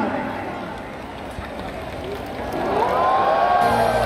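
Stadium PA: the announcer's voice fades in echo over a murmuring crowd. Then the show's music starts, with gliding tones rising and swelling and a steady bass coming in near the end.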